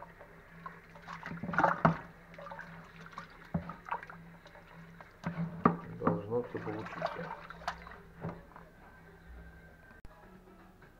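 Long wooden paddle stirring steamed rice in water inside a plastic barrel: irregular sloshing and splashing, with occasional sharp knocks.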